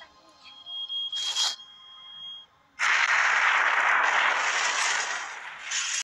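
A bomb's countdown timer sounds one steady high beep for about two seconds, starting about half a second in, with a short hiss of noise over it. After a brief hush, a loud explosion comes in just before three seconds and its noise carries on to the end.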